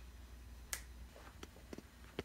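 A sharp click about a second in, then a few lighter clicks and taps near the end, over a faint low hum.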